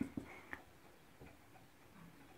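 Marker pen tapping on a whiteboard while writing: a few short, faint clicks in the first half second, then quiet.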